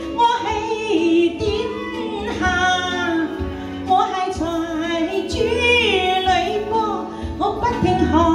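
A woman singing through a microphone over backing music, holding long wavering notes across several phrases.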